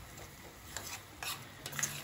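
Steel spoon stirring a coconut and jaggery filling in a stainless steel pan, with a few short clicks and scrapes of the spoon against the pan in the second half.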